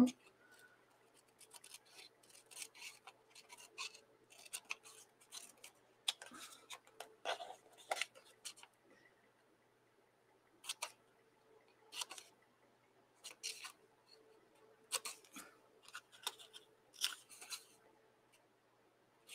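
Small scissors snipping through a strip of painted paper, cutting out a fringed piece: quiet, crisp snips, closely packed through the first half, then single snips a second or so apart.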